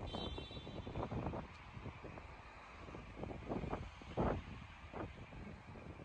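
Wind buffeting a phone microphone in a city street, a low uneven rumble, with faint traffic noise under it.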